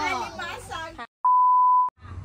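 A single steady electronic beep at one pitch, lasting under a second, that starts after a brief silence following a spoken word and cuts off sharply, an edit tone laid into the soundtrack at a scene cut.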